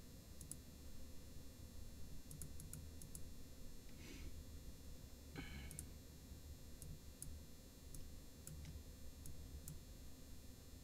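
Faint, scattered computer mouse clicks, one every second or so, over a low steady hum, with two slightly louder short noises about four and five and a half seconds in.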